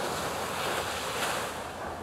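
Sea water washing in: a hissing rush that comes in strong and eases off after about a second and a half.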